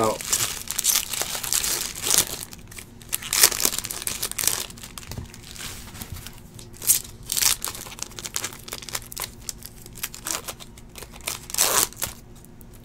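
Foil wrappers of Bowman baseball card packs crinkling and tearing as they are opened by hand, in irregular rustles with several louder crackles.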